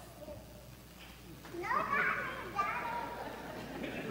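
Children's voices talking indistinctly, starting about a second and a half in after a quieter moment.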